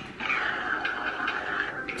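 Sound effect from the GraviTrax app on a tablet as its build-step slider is dragged: a steady, mid-pitched hissing tone that dips slightly in pitch as it begins and cuts off just before the end.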